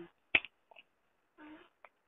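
A single sharp click over a phone line about a third of a second in. Near the end come a faint, brief voice sound and a second, fainter click.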